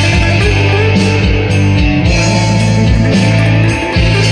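Electric guitar playing an improvised rock lead over a rock backing track with a steady beat.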